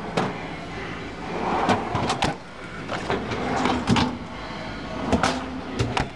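A refrigerator's pull-out freezer drawer being slid along its runners and handled, with several sharp knocks and clunks spread through the few seconds.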